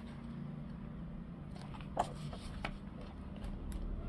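Coloring-book paper page being turned by hand: faint paper handling with a couple of light clicks about two seconds in, over a low steady hum.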